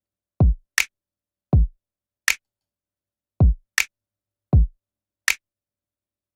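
Programmed drum pattern playing on its own: a kick drum whose pitch drops quickly alternates with a short, sharp snare hit, roughly one hit every half second to second. The drums run through a Distressor compressor with its distortion engaged, which adds a little distortion and click to the kick's attack.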